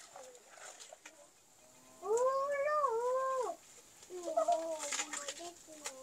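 A cat meowing: one long call about two seconds in that rises, wavers and falls, then a lower, broken call near the end.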